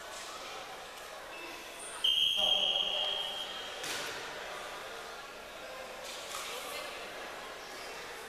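Referee's whistle: one long steady high blast about two seconds in, lasting about a second and a half, over a murmur of voices in the gym.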